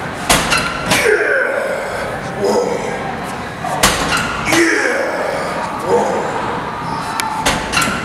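Leg extension machine clanking with a few sharp metallic knocks as the weight stack is worked under the coach's manual push against the leg pad, with a man grunting and straining between the knocks.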